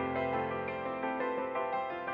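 Soft instrumental background music with slow, sustained notes that change every half-second or so.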